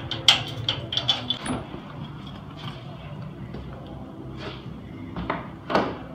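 Metal clicks and clanks of a key working a lock and an iron security gate being opened, followed near the end by a heavier thump as a wooden door is pushed open.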